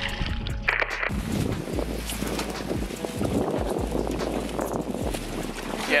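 Wind rushing over the camera microphone on open water, a steady roar with a low rumble beneath, with quiet background music underneath.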